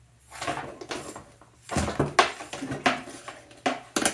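Small metal lamp parts and hand tools being handled while a lamp socket and its ring are fitted onto the wire: a brief rustle, then a run of sharp clicks and clinks from about two seconds in.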